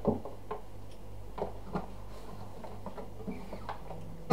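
Faint scattered clicks and taps of an acoustic guitar being handled and settled into playing position, the first click the loudest, over a low steady hum.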